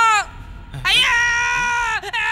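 A man's high-pitched scream of fright, held on one pitch and dropping as it ends. One scream stops just after the start, and another begins about a second in and lasts almost to the end.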